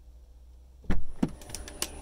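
A sudden low thump about a second in, followed by a few light clicks and knocks, over a faint low hum.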